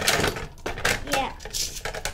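Two Beyblade spinning tops clashing and grinding against each other in a plastic stadium: sharp clacks and a high, rattling scrape as they rub together.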